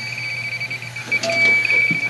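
Electronic refrigerant leak detector alarming at the evaporator coil, a rapid high beeping that at times runs together into one continuous tone: it has picked up refrigerant, the sign of a leak in the coil. A steady low hum runs underneath.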